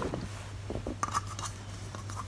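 Faint handling noise: a few soft clicks and rustles in the middle, over a steady low hum.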